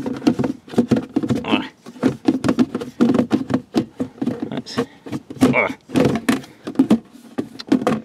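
Hard clear-plastic storage box being handled and pushed into place against a car's underbody, clattering with many quick knocks and clicks of plastic on plastic and metal, with a few brief creaks.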